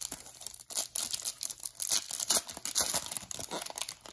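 Shiny foil trading-card pack being torn open by hand: irregular crinkling and tearing of the wrapper.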